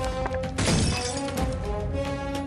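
Theme music with held tones, with a shattering sound effect that bursts in about half a second in and dies away as the pieces fall.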